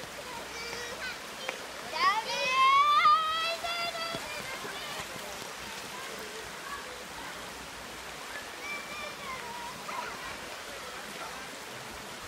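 Shallow river water rushing steadily over sandstone slabs. About two seconds in, a child gives one long high-pitched wordless call that rises in pitch, with fainter voices later.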